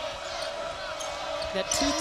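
Basketball game sound in an arena: the ball bouncing and crowd noise over a steady hum. A commentator starts talking near the end.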